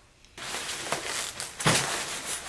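Plastic packing wrap rustling as grey-stained cedar enclosure panels are handled, starting a moment in, with a few light knocks of wood on wood; the loudest knock comes near the end.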